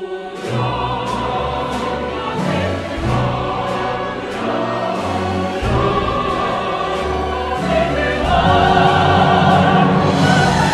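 Choir and symphony orchestra performing a cantata movement in full, the choir singing over a stepping bass line with regularly accented strokes. The music enters loudly at the start and swells louder near the end.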